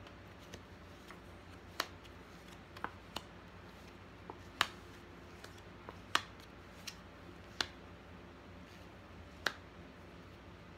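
Tarot cards being handled and dealt out one at a time, with a series of short, sharp card snaps at irregular intervals of about a second, some louder than others.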